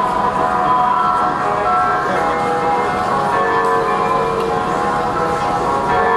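Guqin music: plucked zither notes ringing on in long held tones.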